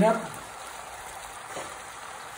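Spaghetti with olive oil and pasta cooking water sizzling steadily in a frying pan.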